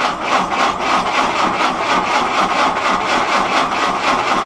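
Electric starter cranking a Willys L134 Go Devil four-cylinder flathead engine in a steady, rapid rhythm of compression strokes, without it firing, then cutting off suddenly. The owner puts the failure to start down to the tank running low on gas.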